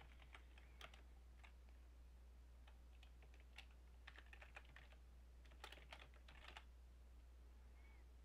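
Faint typing on a computer keyboard: scattered soft key clicks in short runs, busiest around three to five seconds in and again around six seconds in, over a steady low hum.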